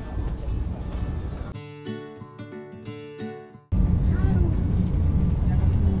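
Low, steady rumble inside a moving express train's passenger coach, broken about a second and a half in by roughly two seconds of edited-in music with no background behind it. The music cuts off suddenly and the train rumble comes back louder.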